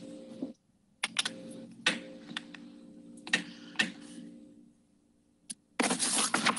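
Irregular computer keyboard and mouse clicks over a video-call microphone, with a faint steady hum under them from about a second in until about four and a half seconds. A louder scraping noise starts just at the end.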